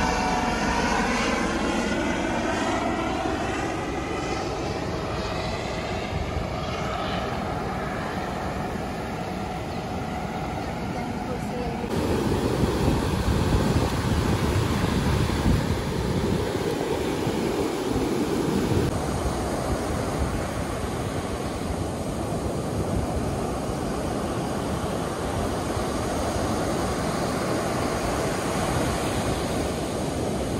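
A helicopter passes overhead, its engine and rotor whine falling in pitch as it goes by. About twelve seconds in, the sound cuts to ocean surf breaking with wind on the microphone.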